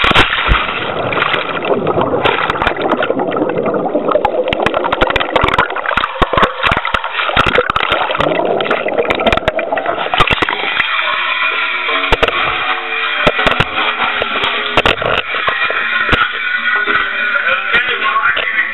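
Water churning and bubbling around a homemade micro submarine as it submerges, with many sharp clicks and knocks. About eleven seconds in, background music with held notes takes over.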